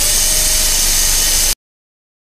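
Low-speed contra-angle dental handpiece running with a steady high-pitched whine and hiss as its bur works a molar on a dental training model, cutting off suddenly about one and a half seconds in.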